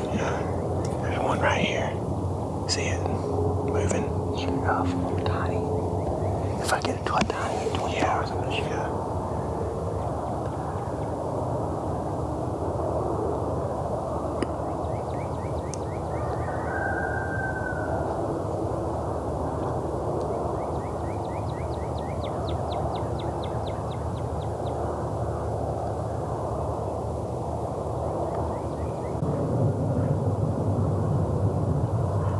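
Hushed whispering voices over a steady low rumble, with short sharp chirps in the first few seconds and a run of rapid high ticks in the second half.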